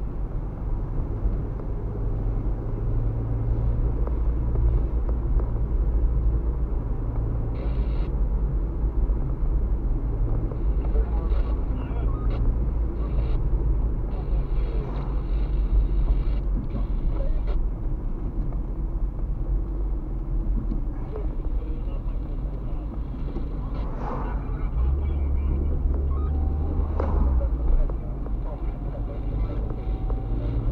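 Steady low rumble of a car's engine and tyres heard from inside the cabin while driving slowly along a street, growing a little deeper and stronger for a few seconds near the end.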